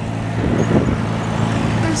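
Steady rumble of wind on the microphone and surf at the shoreline, swelling briefly in the middle, over a steady low hum.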